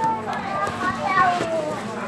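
Children's voices chattering and calling out, high-pitched and sliding in pitch, too indistinct to make out words.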